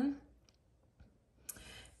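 Quiet room with a few faint clicks: two small ticks about half a second and a second in, and a sharper click about one and a half seconds in.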